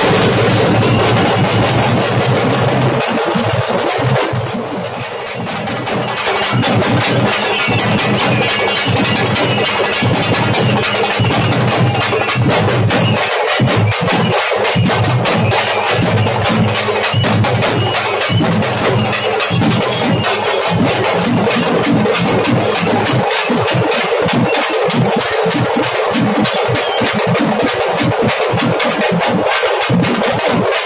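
A band of stick-beaten drums playing a fast, dense rhythm over a steady low hum. The playing drops in level briefly about four seconds in.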